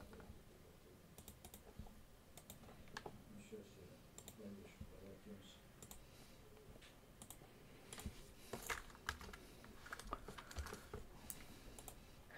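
Faint, scattered clicks of a computer mouse and keyboard, a little busier near the end.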